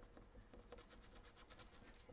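Faint scratching of a small metal-tipped tool scraping the scratch-off coating on a laminated savings-challenge card, in many quick short strokes.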